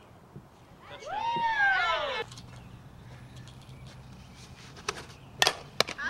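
A softball bat striking the ball near the end: sharp cracks, the first the loudest, with a smaller tap just before. About a second in, a loud drawn-out call whose pitch rises and then falls lasts just over a second.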